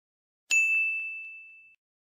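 A single ding sound effect about half a second in: one clear tone that fades away over about a second.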